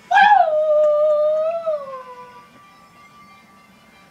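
A young man howls through cupped hands: one long high call that swells at the start, holds steady, then slides down in pitch and fades out about two seconds in.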